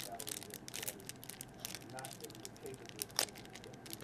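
Plastic wrapper of a baseball card pack crinkling and tearing as it is ripped open by hand, a quick run of crackles throughout.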